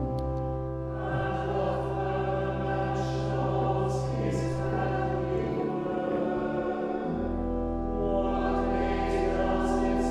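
Church choir singing, accompanied by a pipe organ holding low sustained bass notes. The organ bass drops out for about a second and a half past the middle, then comes back in.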